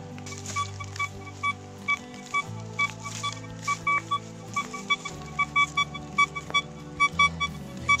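Golden Mask 4 Pro metal detector beeping: a quick series of short, clear beeps as the coil passes back and forth over a large silver coin buried about 40 cm deep, a solid signal at that depth. Background music plays underneath.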